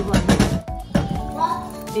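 Simmering tomato sauce in a saucepan splashing and spattering for about half a second as liquid seasoning is poured in, over steady background music.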